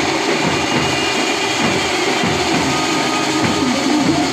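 A Maharashtrian benjo band playing loudly: amplified banjo melody over the band's drums, a dense, unbroken wall of music.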